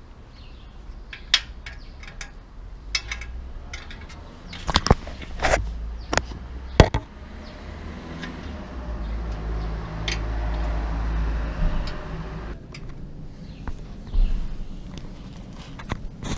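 Metal clicks and knocks of an open-end spanner on a bicycle's rear axle nut as it is worked loose, with several sharp clacks between about five and seven seconds in. A steady rushing noise runs from about eight to twelve seconds in.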